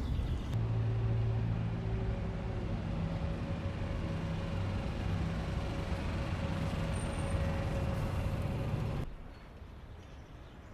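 City bus engine running close by, a steady low hum. About nine seconds in it drops off abruptly to much quieter street ambience.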